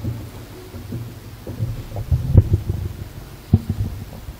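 Irregular low thumps and knocks with a low hum underneath, a sharper knock about two and a half seconds in and another near three and a half seconds.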